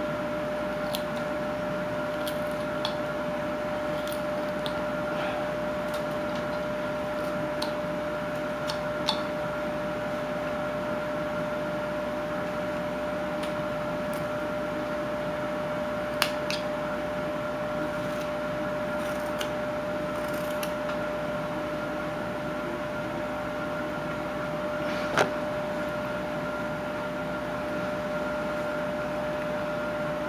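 A steady hum with the scattered faint clicks and scrapes of a carving knife cutting into a wooden block, a few sharper clicks standing out among them.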